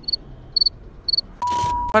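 Cricket-chirp sound effect: three short high chirps about half a second apart over otherwise silent audio. Near the end comes a steady beep of about half a second.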